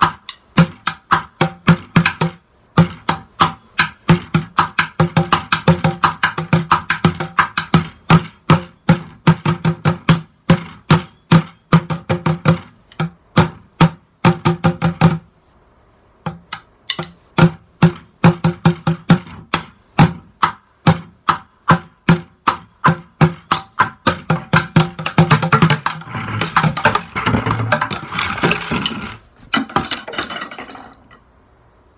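Wooden drumsticks beating on upturned plastic buckets in fast runs of sharp hits with a low, hollow ring. There is a short break about halfway, and a dense roll near the end that stops suddenly.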